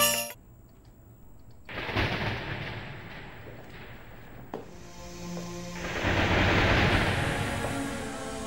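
Storm sound effect: a thunderclap about two seconds in that rumbles away, then wind rising in a gust near the end.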